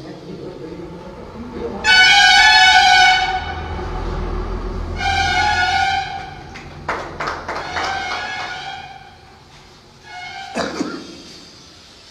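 Two loud, steady horn-like tones, each about a second long, the first a little longer, followed by a few sharp knocks and clatters.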